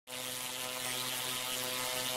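Steady electric-arc buzz with a hiss over it, starting suddenly: a high-voltage spark or lightning sound effect.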